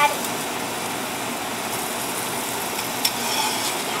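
Meat sizzling steadily on a hot stovetop griddle, with a single click of a spatula against the pan about three seconds in.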